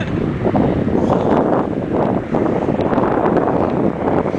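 Wind buffeting the microphone, a loud uneven rumble that holds through the whole stretch.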